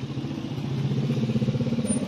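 A small vehicle engine running with an even throb, growing steadily louder as it draws near.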